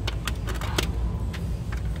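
Glass nail polish bottles clicking against each other and against a clear plastic display tray as they are handled and set in place: several light, separate clicks over a low steady hum.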